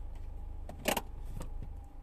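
Low, steady rumble of a car heard from inside the cabin while it is being driven, with one short sharp click about a second in.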